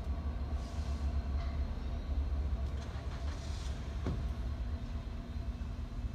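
Steady low outdoor rumble with a faint hum, the background of a parking lot.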